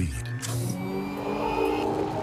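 Sound effect from a TV commercial soundtrack: a steady, engine-like mechanical whir with several tones held together, stopping near the end.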